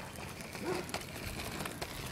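Quiet outdoor street ambience with a few faint ticks and a brief faint pitched sound a little under a second in.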